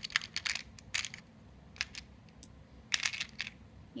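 Small acrylic ear plugs clicking against one another and against a hard plastic compartment box as they are picked out by hand, in scattered clusters of light clicks.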